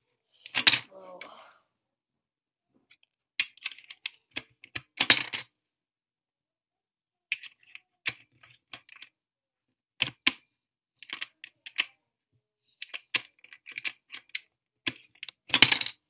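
Pennies dropped one at a time through the slot of a plastic soccer-ball coin bank, each clinking against the coins inside, with smaller clicks and taps of fingers on the plastic shell in between. There are four loudest knocks: about half a second in, about five seconds in, about ten seconds in and near the end.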